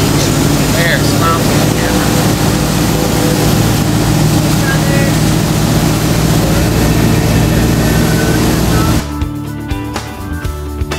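Motorboat under way: the engine runs steadily under loud rushing wind and wake spray on the microphone. About nine seconds in it cuts off and guitar music begins.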